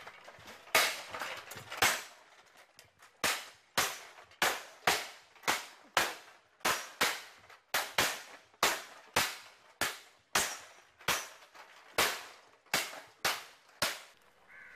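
Swords striking shields in kalaripayattu sword-and-shield sparring: a run of sharp clashes, two spaced ones first and then a steady rhythm of about two strikes a second.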